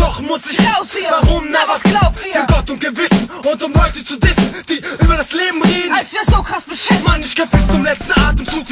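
German hip hop track: a rapper's voice over a beat with deep bass drum hits.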